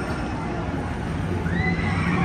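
Fireworks-show soundtrack playing over park loudspeakers: a low held note, joined about one and a half seconds in by a high sound that rises and then falls in pitch.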